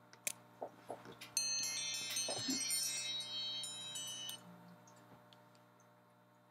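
A few soft clicks, then a cluster of high, ringing chime tones that sound together for about three seconds and stop abruptly.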